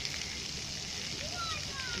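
Steady hiss of splash-pad water jets spraying, with faint voices in the second half.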